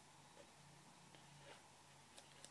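Near silence: room tone with a faint low hum and a few faint soft ticks.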